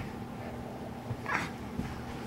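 A baby's short, high vocal sound, a brief squeal, just past the middle.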